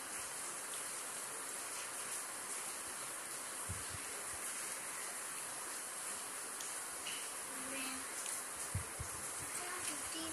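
Steady hiss of room noise, with a few soft thumps as cardboard jigsaw pieces are pressed and slid on a glass tabletop: two close together a few seconds in, and another near the end.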